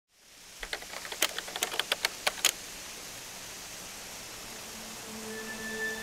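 Steady hiss with a quick run of about a dozen sharp clicks in the first two and a half seconds, then background music with long held tones fading in about five seconds in.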